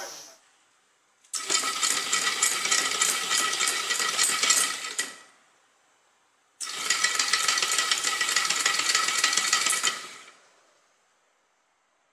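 The DC motor of a homemade automatic blackboard machine driving its toothed timing belt to move the flexible blackboard and screen. It runs twice for about four seconds each, with a rapid clicking rattle and a steady whine. Each run starts suddenly and fades out as the board stops at its set position.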